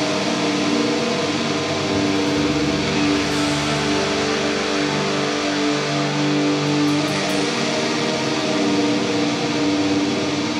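Black metal band playing live: distorted electric guitars holding chords over drums and cymbals, a dense, steady wall of sound with no break.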